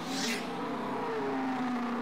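Race car engine sound effect in an animated score reveal: a steady engine note whose pitch sags slowly, with a brief hiss at the start.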